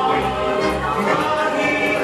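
Recorded show music: a choir singing held chords over a steady low accompaniment.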